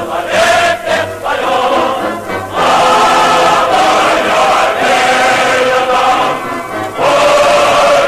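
A choir singing over music in long held phrases, with short breaks between phrases.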